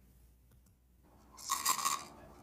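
Dry cat food rattling and clinking against a dish, starting about a second and a half in.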